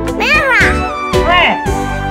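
Background music for a children's video, with a high voice making three short calls that each rise and fall in pitch.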